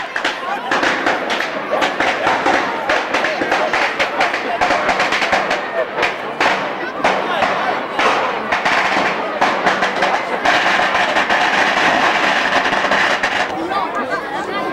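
Pyrotechnics going off aboard an old steam tug: dense, rapid crackling and popping, with a steadier hiss for about three seconds near the end, as smoke and flames pour from the boat.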